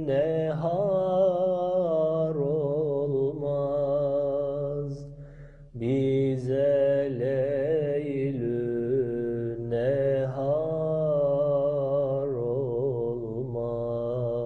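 Solo male voice singing an unaccompanied Turkish ilahi in long, ornamented melismatic phrases over a steady low drone. There is a short break about five seconds in, then a second phrase.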